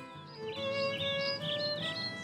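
Soft instrumental music with long held notes. From about half a second in, a bird chirps repeatedly over it in a quick run of short, high calls.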